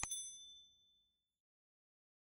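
A sharp click followed by a bright, high notification-bell ding that rings out and fades away within about a second and a half: the bell sound effect of an animated subscribe button.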